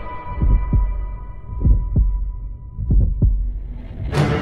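Heartbeat sound effect: three low double thumps, lub-dub, about a second and a quarter apart, while a thin high held tone fades away behind them.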